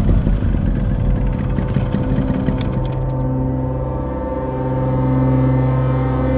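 A low vehicle-engine rumble that starts abruptly just before and runs on under sustained background music chords.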